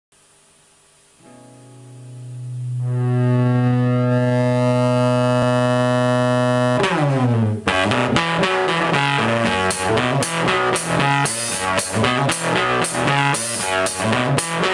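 Dirty-blues intro on an amplified acoustic guitar through a fuzz effect: one distorted low note swells in and rings on for several seconds, then a repeating riff starts about seven seconds in. A drum kit comes in near ten seconds with steady hits, about two a second.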